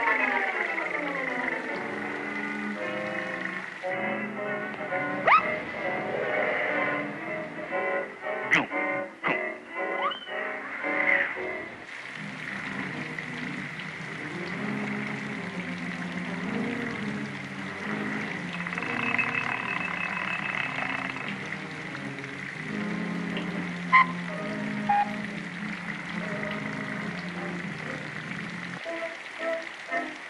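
Music score of a 1931 cartoon, with a steady faint high tone underneath. A few sharp sound-effect hits and quick rising glides come between about five and eleven seconds in, with another sharp hit near the end.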